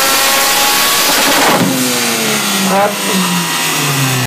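Mazda RX-7's rotary engine revving hard under load on a dyno, then the revs falling away over the last two seconds as the exhaust shoots flames.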